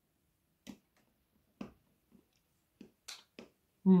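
Close mouth sounds of biting and chewing a piece of dark milk chocolate with dried raspberry pieces: about six short, crisp clicks spaced apart, with gaps of silence between them. A short hum of approval comes right at the end.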